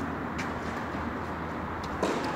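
Steady low background noise of an indoor tennis hall, with two faint short clicks about a second and a half apart.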